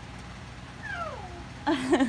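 A single high call that slides down in pitch like a meow, about a second in, followed near the end by a short burst of laughter.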